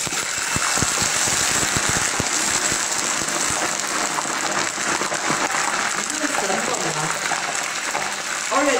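Hot deep-frying oil sizzling as whole centipedes are dropped into it. The hiss starts suddenly, with sharp crackling pops over the first couple of seconds, then settles to a steady loud sizzle as the oil foams.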